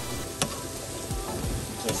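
Sliced mushrooms sizzling in oil in a nonstick frying pan as a spatula stirs them, with a sharp tap about half a second in.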